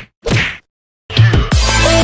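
Editing sound effects for an animated end card: two short whooshes, a brief silence, then a hit, and about a second and a half in loud electronic music with strong bass kicks in.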